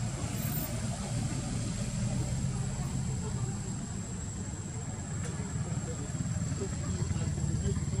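Steady low rumble of an engine running, with a constant thin high-pitched whine above it.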